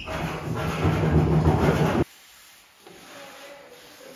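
A long-handled broom scraping loose plaster rubble across a bare floor for about two seconds, then cutting off suddenly to faint background sound.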